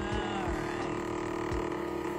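Tabletop cotton candy machine running, its spinner head giving a steady motor hum, with a few soft low thumps in the first second and a half.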